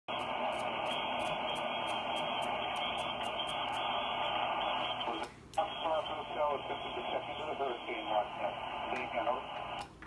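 Steady hiss of band noise from an HF transceiver's speaker tuned to the 20-metre band. About five seconds in the hiss dips briefly, and a weak single-sideband voice then comes through the static.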